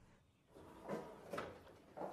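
A door being opened, heard faintly: two soft knocks about half a second apart.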